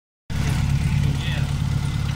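The 2.0-litre inline-four petrol engine of a 1997 Renault Espace idling steadily, heard with the bonnet open.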